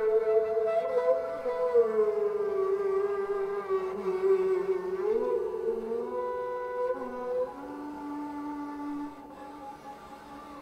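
Sarangi bowed solo: one long sustained note that slides slowly downward, jumps back up about five seconds in, then moves to a lower note and fades near the end.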